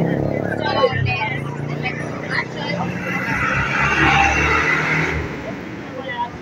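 Busy street-market background: people talking and a motor vehicle running close by, its noise swelling from about halfway through and cutting off shortly before the end.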